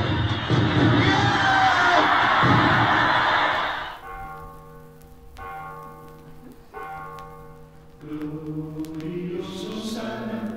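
Recorded music played over the venue's speakers. A loud, dense passage cuts off about four seconds in and gives way to quieter sustained chords that break off twice, then a rising melodic line near the end.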